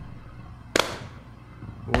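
A gap between sung lines in a song, carried by a sparse beat: one sharp drum hit about three-quarters of a second in and another just as the singing comes back in at the end, over a quiet backing.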